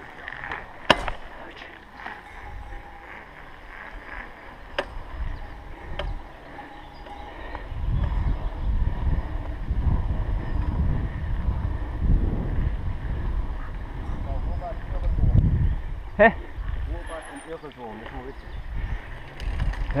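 Wind buffeting the microphone of a camera on a moving mountain bike: a low rumble that grows much louder about eight seconds in and eases off near the end. A few sharp clicks come in the first several seconds.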